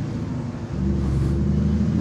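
Cars driving past on the road close by: a steady engine and tyre noise that dips briefly under a second in, then swells again as the next car comes through.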